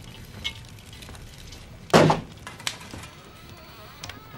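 Small handling clicks, then one loud thump with a brief clatter about halfway through, and another lighter click just after.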